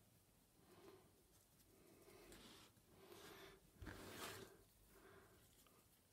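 Near silence: room tone, with a few faint, soft handling sounds of a paintbrush and hands on the wooden tag between about two and four and a half seconds in.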